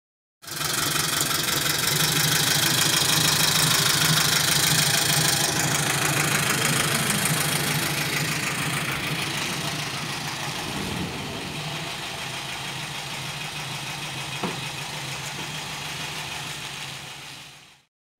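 A car engine idling steadily, with a low hum and a strong hiss over it; it fades out near the end.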